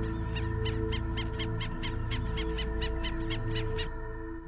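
A bird calling in a rapid, even run of short sharp notes, about six a second, over a sustained music drone. The calls stop shortly before the drone fades out at the end.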